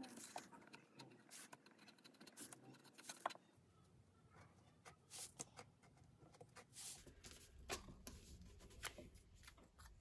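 Faint, irregular scratching and clicking of a knife blade cutting a circle out of a manila file folder.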